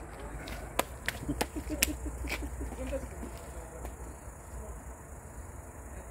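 A handful of sharp, irregular clicks in the first couple of seconds over a low outdoor rumble, with faint voices in the background.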